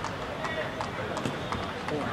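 Faint, distant voices of cricketers calling out on the field over steady ground noise, with a few faint ticks.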